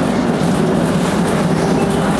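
Tram in motion, heard from on board: a steady running noise of steel wheels on the rails with the hum of the drive.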